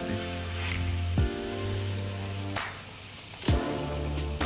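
Galunggong (round scad) frying in hot oil in a pan, a steady sizzle, under background music with held chords that change every second or so.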